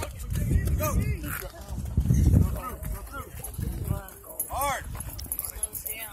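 Children's high voices calling and shouting across an open field, pitch rising and falling, over a low uneven rumble of wind and handling noise on the phone's microphone.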